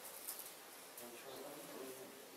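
Faint room noise with distant, indistinct voices and a few light rustling clicks.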